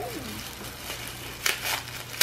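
Tissue paper crinkling and rustling as a wrapped gift is unwrapped by hand, with a few sharper crackles about a second and a half in.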